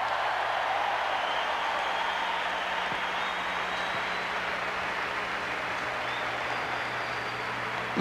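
A large crowd applauding: a steady wash of clapping that eases slightly toward the end.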